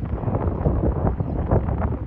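Wind buffeting the microphone: an uneven, gusty rumble.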